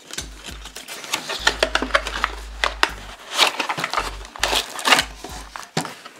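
Cardboard packaging being slid apart and handled: rustling and scraping with a scatter of sharp clicks and taps as the inner cardboard sleeve and the plastic tray holding the camera come out of the box.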